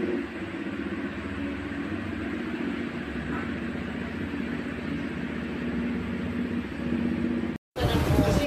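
Electric stand fan running: a steady motor hum with the whoosh of air from the blades, cut off abruptly near the end.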